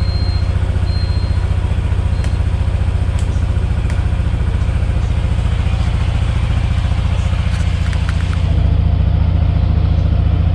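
Yamaha NMAX 155 scooter's single-cylinder engine idling steadily, a little louder near the end.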